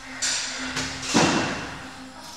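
A single thud a little over a second in, the loudest sound here, over background music with a steady low note.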